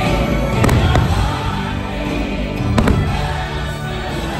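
Aerial fireworks bursting, with three sharp bangs: two close together about half a second in and a louder one near three seconds. Under the bangs runs the fireworks show's accompanying music.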